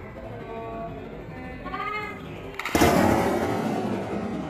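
A single loud blast about three-quarters of the way in, fading over about a second: the small explosive charge police used to destroy a suspicious package, which turned out to be a printer toner cartridge.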